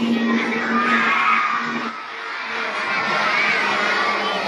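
A crowd of young schoolchildren shouting and cheering together.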